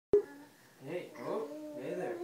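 A sharp click as the recording starts, then wordless voice sounds from about a second in: a toddler babbling.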